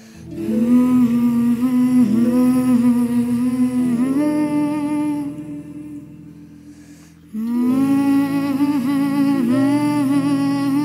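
Lullaby music: a voice humming a slow, gentle melody over soft instrumental accompaniment, in two long phrases with a quieter stretch about six to seven seconds in.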